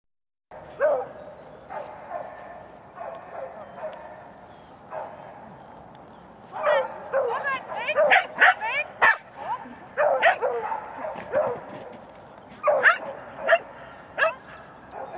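Dog barking and yipping in short, excited bursts while running jumps, sparse at first and then in rapid clusters from about halfway through. Short spoken commands are mixed in.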